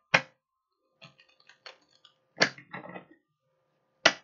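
Tarot deck being shuffled by hand: two sharp snaps of the cards, about two seconds apart, with light clicks between and a short fluttering run of card ticks after the second.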